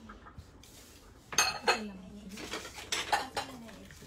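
Ceramic bowls clinking against each other and the box as they are handled and packed, with a few sharp clinks starting about a second and a half in and more near the end.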